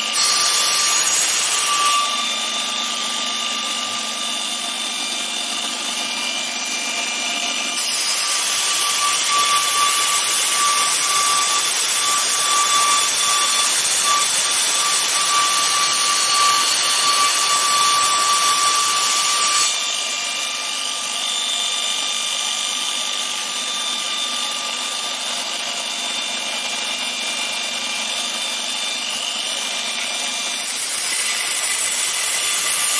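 Gekon Mikro belt grinder running, its sanding belt grinding a flat metal bar held against the contact wheel. The grinding is loud and hissy for the first couple of seconds and again from about 8 to 19 s in; between those spells the belt runs on with a steady whine.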